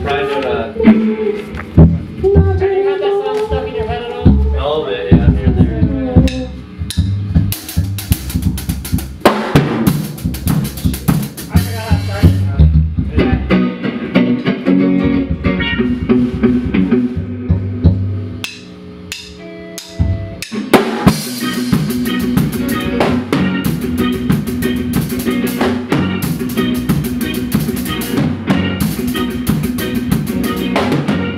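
Ska band rehearsing: a drum kit close to the microphone, snare, bass drum and rim clicks, with guitar, bass and other instruments playing along. It starts with loose sliding notes, the drums and band come in after several seconds, drop out briefly about two-thirds of the way in, then play on steadily.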